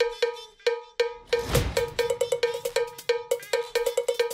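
Percussion sting under the show's animated logo: a quick, even run of cowbell-like strikes on one pitch, about five a second and slightly faster in the second half. A whoosh swells up and falls away about a second and a half in.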